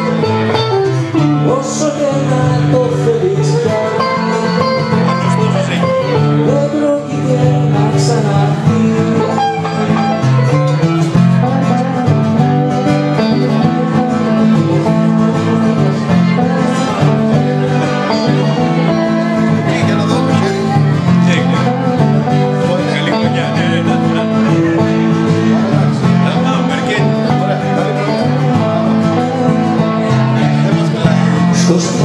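Live music from two guitars, one of them acoustic, playing steady chords with a wavering melody line over them.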